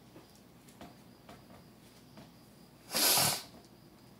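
A short, loud burst of breath noise from a person about three seconds in, lasting about half a second. Before it, faint ticks of trading cards being handled.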